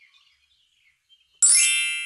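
A bright, many-toned chime sound effect rings out suddenly about one and a half seconds in and fades away, signalling that the orange yo-yo is the right answer.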